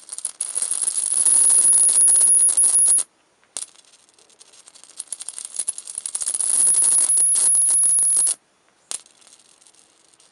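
High-voltage arc from a 555-timer-driven flyback transformer, crackling with a steady high-pitched whine. Two long arcs, the first about three seconds and the second about five, each cut off suddenly, with short snaps as the arc strikes again.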